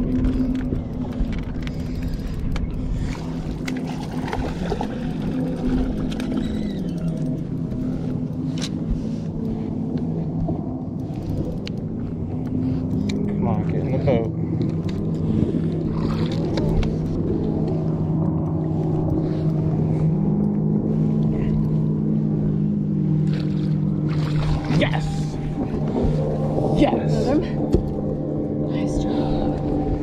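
Bow-mounted electric trolling motor humming, its pitch stepping down and up several times as its speed changes, with occasional sharp clicks over it.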